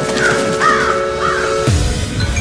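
A held trailer-music drone with a crow cawing three times over it. Near the end the drone breaks off into a deep falling sweep.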